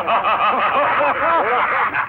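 Men laughing, a quick run of short ha-ha bursts.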